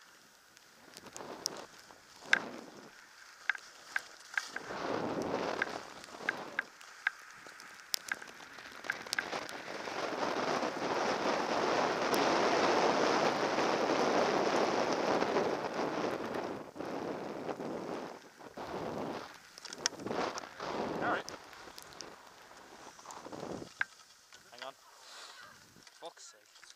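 Skis sliding over snow on a downhill run, with wind on the camera microphone; the rushing noise builds to a long loud stretch in the middle, then comes and goes in patches as the skier slows. Scattered sharp clicks and knocks throughout.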